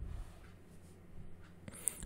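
Faint room tone with a steady low hum, slightly louder for a moment at the start, and a brief soft noise just before the voice comes back in.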